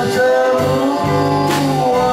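Small live band playing a slow pop song on electric guitar, keyboard and drums, with a man singing through a microphone; a cymbal crash about one and a half seconds in.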